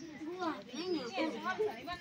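Several women and girls talking over one another, an overlapping chatter of voices.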